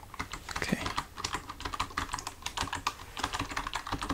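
Typing on a computer keyboard: a steady, uneven run of key clicks in quick succession.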